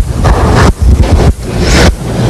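Loud rumbling, blowing noise on the microphone, coming in uneven surges with short dips, like handling or air hitting the mic.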